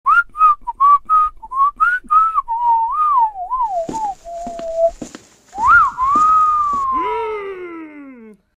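A person whistling a tune in short, bright notes that turn into wavering slides and a held note, then a quick rising-and-falling whistle followed by a long slow falling one, the shape of a wolf whistle. A few soft knocks sound under the middle of it.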